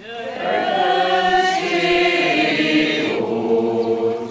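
Combined choir of men's and women's voices singing unaccompanied: one long sustained phrase that ends about three seconds in, followed by a brief breath and the start of the next phrase.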